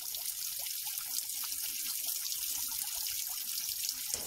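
A thin stream of water trickling down a rock face and splashing into a small pool, a steady splashing hiss dotted with quick little drips and plinks.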